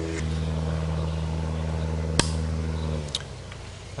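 A steady engine hum that drops slightly in pitch about a quarter second in and stops about three seconds in. A single sharp click comes about two seconds in, with a fainter one shortly after the hum stops.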